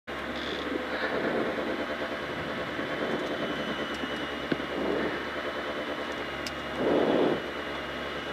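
Peugeot 206 XS Group A rally car's engine running at standstill, heard from inside the stripped cabin, with a brief swell in level about seven seconds in.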